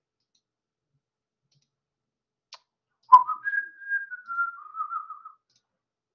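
A couple of clicks, then a person whistling a short phrase of a few notes stepping down in pitch, lasting about two seconds.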